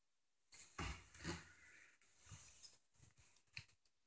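Near silence in a small room, broken by a few faint rustles and small clicks.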